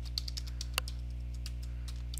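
Computer keyboard keys clicking as a short name is typed: a quick run of keystrokes over about a second, one louder than the rest, over a steady low hum.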